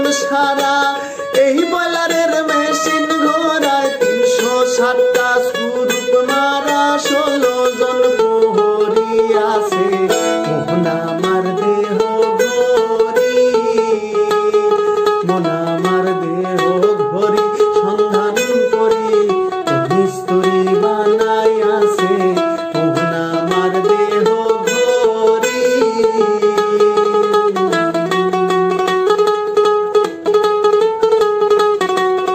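Acoustic mandolin playing a folk melody, with a man singing along in a voice that glides and bends between notes.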